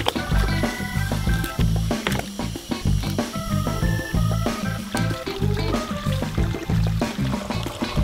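Background music with a pulsing bass beat and a melody of short, stepping notes.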